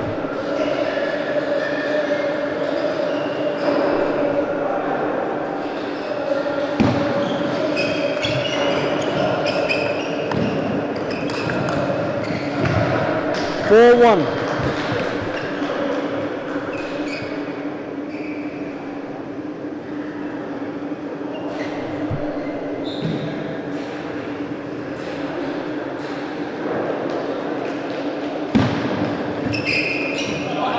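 Table tennis ball clicking off rackets and the table during doubles rallies in a large hall, over a steady hum. A loud shout comes about halfway through, and voices sound in the background.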